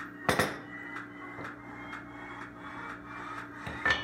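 Wooden spoon stirring and knocking in a ceramic pot: a sharp knock just after the start, faint scrapes and ticks, then another knock near the end as the spoon is laid down on a china plate.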